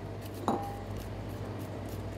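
Metal spoon scraping the skin off a ginger root over a ceramic bowl, with one sharp ringing clink about half a second in.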